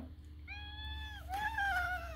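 Tortoiseshell cat meowing twice in quick succession: a high, level meow and then a second that sinks slightly in pitch at its end. A steady low hum runs underneath.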